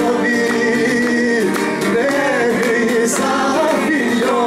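A man singing a Greek folk song live into a microphone, in long, wavering held notes, while strumming a laouto (Cretan lute) in accompaniment.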